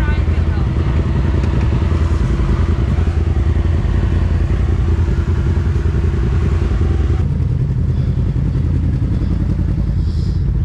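Side-by-side UTV engine running at low speed while crawling over rocks, heard from the cab as a steady low rumble. About seven seconds in the sound changes abruptly to another machine's engine.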